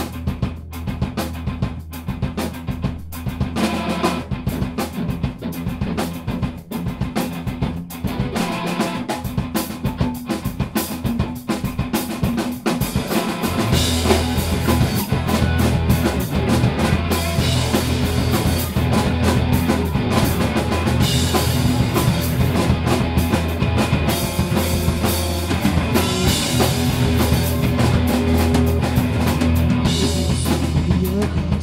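Live rock band playing an instrumental passage on distorted electric guitars and drum kit. For the first dozen seconds the playing is broken by short gaps, then about thirteen seconds in the full band comes in louder and keeps going.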